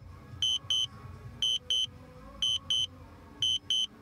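DJI drone alert beeping in pairs, a quick double beep about once a second, four times. It is the warning that the battery is low and the drone is auto-landing.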